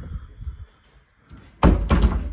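A wooden door banging: a loud thud about one and a half seconds in, with a second quick knock right after it.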